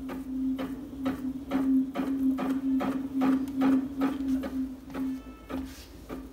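Homemade neodymium-magnet alternator rotor being spun by hand with quick repeated strokes, about three a second, over a steady hum.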